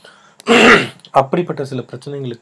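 A man clears his throat once, loudly, about half a second in, then his speech resumes.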